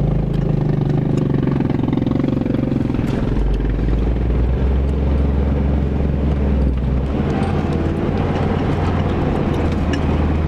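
Four-wheel-drive vehicle's engine running steadily under load as it climbs a steep dirt ridge, heard from inside the cab, with scattered light clicks and rattles.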